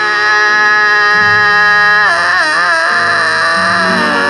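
A man's voice singing a long held note, which wavers about two seconds in before settling again, over acoustic guitar.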